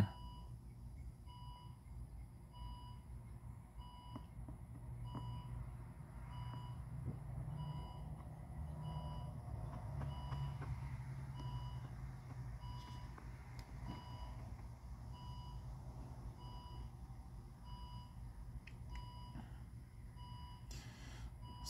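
A faint electronic beep repeating evenly, about three beeps every two seconds, over a low steady rumble.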